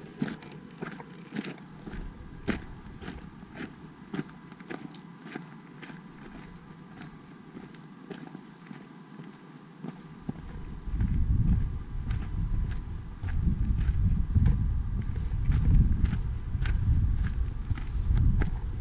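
Footsteps on a rocky dirt trail, about two steps a second. Around ten seconds in the steps give way to gusty wind buffeting the microphone, low and louder than the steps.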